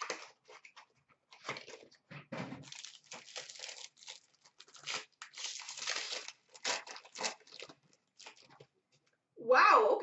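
Trading-card pack wrapper being torn open and crinkled by hand, then the cards handled: a run of irregular crackles and rustles.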